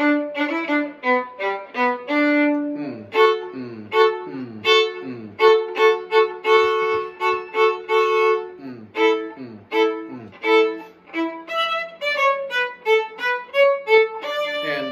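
Solo violin playing a lively hoedown fiddle tune, quick bowed notes with a stretch in the middle where two strings are bowed together.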